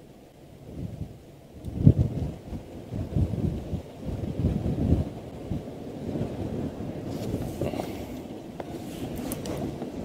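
Wind buffeting the microphone: a gusty low rumble that starts about two seconds in and carries on unevenly.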